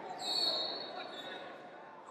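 Echoing large-hall ambience of a wrestling bout: indistinct shouting voices over the thuds and shuffling of wrestlers on the mat, louder in the first second and fading toward the end.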